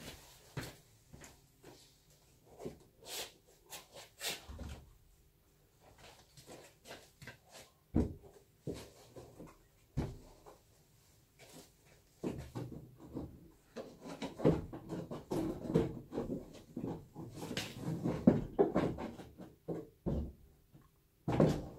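A car's front bumper being handled and fitted to the car: scattered knocks and clicks at first, then busier clattering and scraping from about halfway as it is pushed into place.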